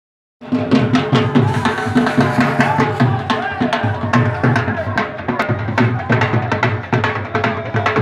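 A dhol drum beaten in a fast, steady rhythm, starting about half a second in, with crowd voices over it.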